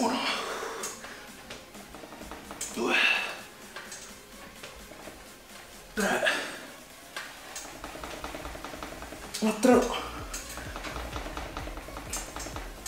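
A man breathing out hard with the effort of each dip repetition, four times about three seconds apart, over faint background music.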